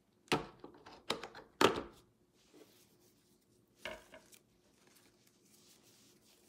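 Craft materials being handled on a wooden tabletop: four short knocks and clatters, the loudest about a second and a half in, with faint handling noise between.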